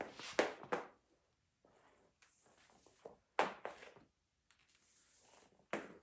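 An extension cord being coiled by hand: short swishes as the cord is pulled through the hands and loops slap against each other, in three brief bursts, at the start, near the middle and near the end.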